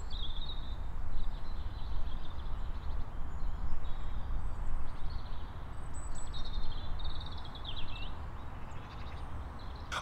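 Outdoor ambience through a Movo VXR10 cardioid video microphone with its dead cat windshield: birds calling in short, high phrases every second or two over a steady low rumble.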